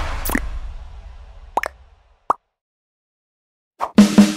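Subscribe-button animation sound effects: a fading whoosh with a low rumble and a short swish just after the start, then two short pops about a second and a half and two seconds in, as of the buttons being clicked. After more than a second of silence comes another short pop just before the end.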